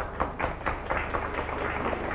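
An audience clapping: many uneven, scattered claps that start suddenly just before and continue throughout.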